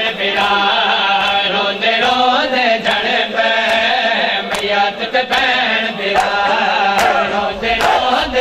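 Men's voices chanting a noha (Shia lament), with sharp hand slaps of matam chest-beating about once a second.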